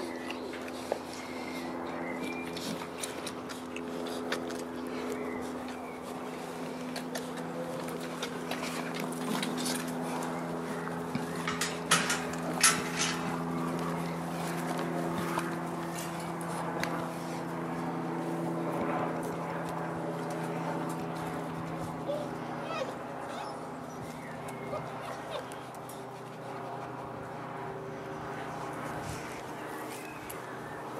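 Boerboel puppies whimpering in short high glides over a steady low hum, with a quick cluster of sharp knocks about twelve seconds in.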